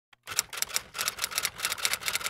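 Typewriter keystroke sound effect over a title card: a quick run of sharp key clacks, about six a second.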